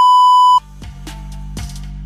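A loud, steady high test-tone beep, the bars-and-tone sound effect of a TV colour-bar test pattern, cuts off sharply about half a second in. Background music with a steady low bass and light percussion then takes over.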